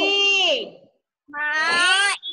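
Two long, high-pitched vocal calls with a short silence between them; the first falls in pitch and the second rises.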